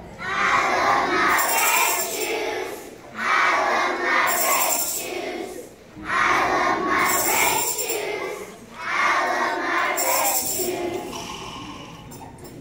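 A large group of young children singing and shouting a chant in unison, four loud phrases about three seconds apart, each ending in a hiss.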